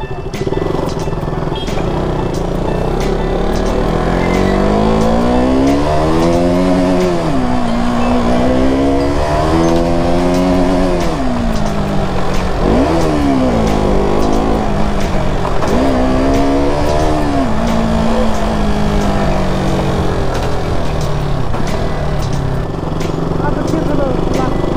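Motorcycle engine rising and falling in pitch several times as the bike accelerates and shifts gears, then running at a steadier pitch, over a steady low rumble.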